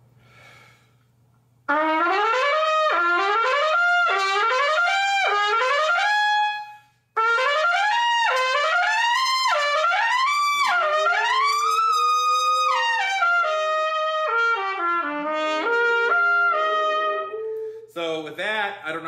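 Lotus Universal B♭ trumpet, with a yellow-brass bell stem, a phosphor-bronze flare and medium-weight hollow valve caps, played solo. It starts about two seconds in with quick rising and falling scale runs, breaks briefly for a breath, then plays more runs, a long held note, and a stepwise descent that ends just before the close.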